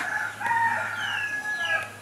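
A rooster crowing: one long crow held for about a second and a half.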